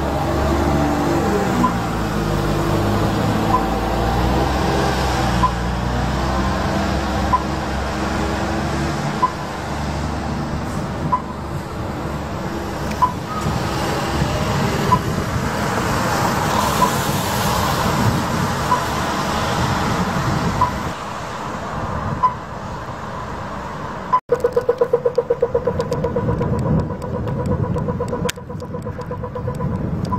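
City bus engine accelerating away, rising in pitch and then fading into wet-road traffic noise. Through it a faint high tick repeats about every two seconds. Near the end the sound cuts out briefly and is followed by a rapid pulsing beep.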